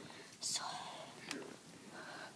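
A child whispering softly close to the microphone, with a short click a little past one second.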